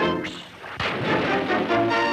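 Orchestral cartoon score with brass. It drops away briefly near the start, then comes a sudden bang a little under a second in, after which the band resumes.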